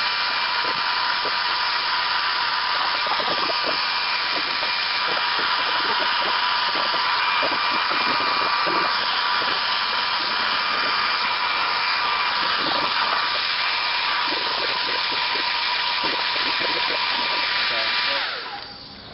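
Handheld Conair hair dryer running steadily, a rush of air with a constant high whine, blowing heat onto a plastic car bumper cover to soften it so the dent can be pushed out.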